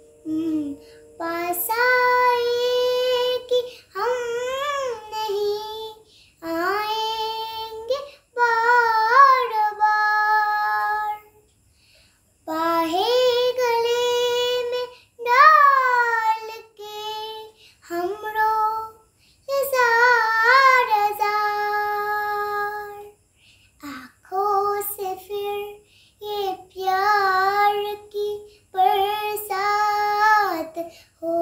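A small girl singing a Hindi film song solo and unaccompanied. She sings long held notes with wavering, ornamented turns, in phrases broken by short pauses for breath.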